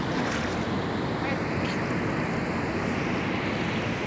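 Steady rushing hiss of rain and river water, with wind on the microphone.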